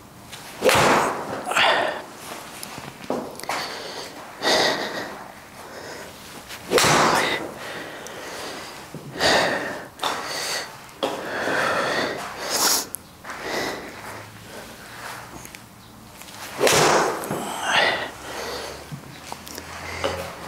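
A man's short, sharp breaths and sniffs, coming as separate bursts every couple of seconds, some in quick pairs.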